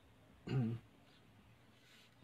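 A man briefly clears his throat once, a short voiced sound about half a second in.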